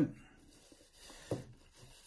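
Faint handling sounds: a brass lock cylinder turned in the hand and fingers picking small pins from a plastic pinning tray, with one brief low sound just over a second in.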